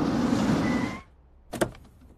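A rushing noise swells up, holds for about a second and cuts off suddenly, followed a little later by a short sharp knock.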